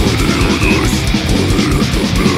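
Old-school death metal studio recording: heavily distorted guitars over fast, dense drumming, with a brief high squealing note about a third of the way in.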